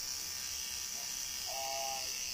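Tattoo machine buzzing steadily while inking skin, with a brief higher tone near the end.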